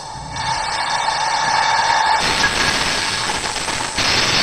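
Dramatic sound-effect bed from an anime fight scene: a steady rushing noise with a faint held tone, swelling over the first second.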